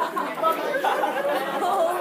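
Many voices talking over one another: a room full of students chattering.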